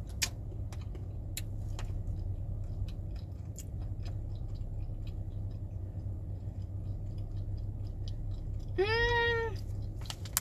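Crunchy cashews being chewed, with small scattered crackles and clicks over a steady low hum. About nine seconds in comes one short, high vocal call that rises and falls in pitch, the loudest sound here.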